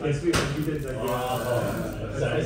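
Indistinct voices of people talking, with a single sharp click or knock about a third of a second in.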